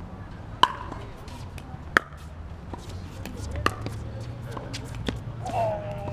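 Pickleball paddles hitting a plastic pickleball in a rally: four sharp pops about a second and a half apart, the first two loudest. A voice is heard briefly near the end.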